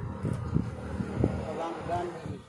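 A cow being hand-milked: thick streams of milk squirting from her teats into a steel pot. Faint voices are heard in the background.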